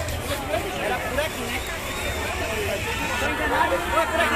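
Dense street crowd talking all at once: a steady babble of many overlapping voices, with no single voice standing clear.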